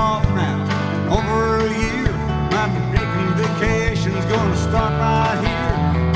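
Live country band playing a song: strummed acoustic guitar and electric guitar over a steady beat, with a man singing lead.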